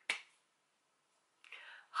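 A single sharp hand clap, followed about a second and a half later by a faint intake of breath.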